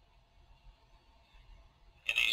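Near silence: only a faint, steady hiss and low hum.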